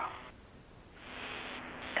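Radio channel hiss from the spacewalk communications loop. The static tail of one transmission fades out, then about a second in the channel opens again with steady hiss and a faint low hum.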